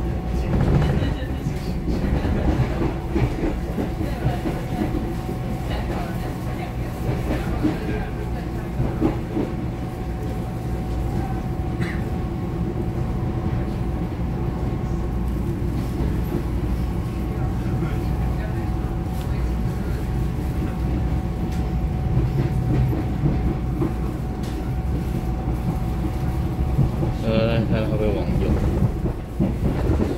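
Taiwan Railways EMU700-series electric commuter train heard from inside the car: steady motor hum and wheel rumble with clicks over rail joints as it runs into a station. Near the end a brief high, wavering squeal is followed by a drop in level.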